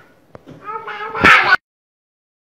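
A toddler's high, drawn-out vocal cry that turns into a loud shriek and cuts off suddenly about a second and a half in.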